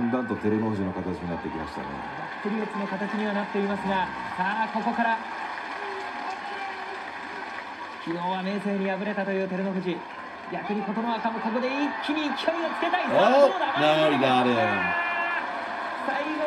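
A man's voice commenting in Japanese on the TV broadcast of a sumo bout, rising in pitch and loudness about thirteen seconds in as the bout reaches its climax.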